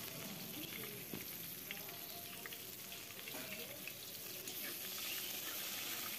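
Sliced onions frying in hot oil in an iron kadai: a steady, quiet sizzle with light scattered crackles.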